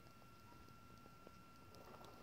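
Near silence: room tone, with a faint steady high-pitched tone.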